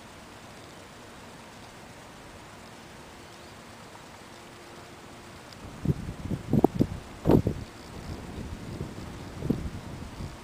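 Quiet outdoor pond ambience with a faint steady hiss. About six seconds in, wind starts buffeting the microphone in a run of irregular low rumbling gusts, the strongest two near the middle.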